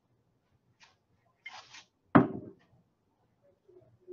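Ethyl acetate poured briefly from a bottle into a beaker of water, a short soft hiss, then a single sharp knock as a container is set down on the desk.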